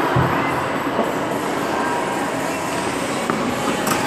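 Steady ice-rink noise: skate blades scraping and gliding on the ice, with a brief low thump just after the start.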